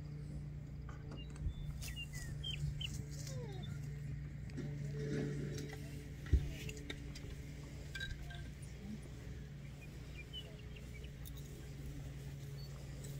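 Faint outdoor ambience of scattered short bird chirps over a steady low hum, with one sharp thump about six seconds in.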